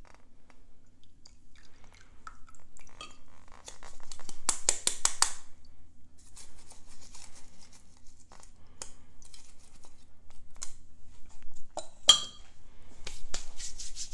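An oil-soaked mesh broth bag being squeezed and handled over a glass measuring cup: scattered rustling and squeezing noises, loudest in a quick run of scratchy crackles about four seconds in. One sharp clink of glass comes about two seconds before the end.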